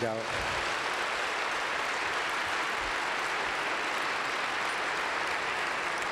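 Audience applauding: steady clapping from a large crowd, even in level throughout.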